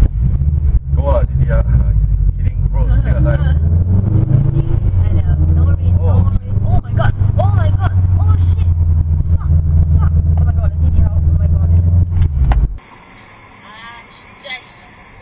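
A car engine running with a deep, steady drone, heard from inside a car, with a rev that rises about four seconds in. People's voices sound over it, and the loud engine sound cuts off abruptly near the end.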